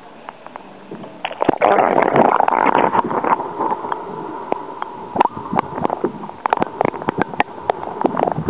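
Water sloshing and gurgling as heard by a submerged microphone, with many sharp knocks and clicks. It starts about a second in, louder and muffled.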